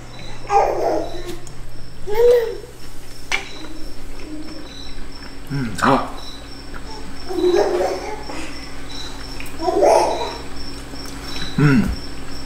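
Short wordless voice sounds while a man eats: a toddler's babbling and a man's "mm" as he chews, coming every couple of seconds. Under them runs a faint, steady high chirping.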